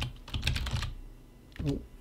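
Computer keyboard typing: a quick run of keystrokes over about the first second, then a short "ooh" near the end.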